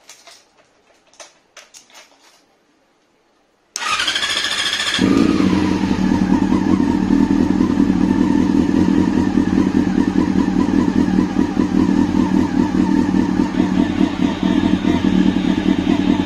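A few light clicks, then the Yamaha YZF-R6's 600 cc inline-four is cranked by its electric starter with a rising whine for about a second, catches, and settles into a steady idle.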